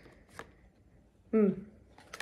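Oracle cards being handled in the hands, with one sharp card click about half a second in and a faint rustle around it.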